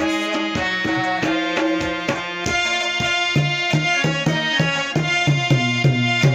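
Harmonium playing sustained notes and melody with a rabab plucked alongside, traditional Pashto ghazal accompaniment. About halfway through, the plucked strokes grow sharper and more rhythmic, with lower notes coming in.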